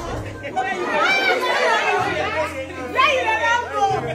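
A group of women chattering and calling out over one another, with the low steady notes of background music underneath from about halfway through.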